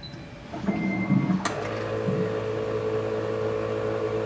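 A short beep and a click, then the AmMag SA purification instrument's pumps start and run with a steady hum as it draws buffers from the bottles to fill its tubing.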